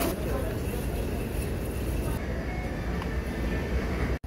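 Shopping cart rolling over a tiled supermarket floor: a steady low rumble, with voices in the background.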